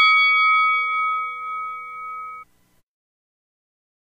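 A metal bell rings out after three quick strikes, several tones fading slowly together, then cuts off suddenly about two and a half seconds in.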